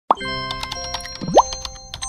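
Playful intro jingle with cartoon sound effects: a sudden pop right at the start, light music notes with scattered clicks, and a quick rising slide about a second and a quarter in.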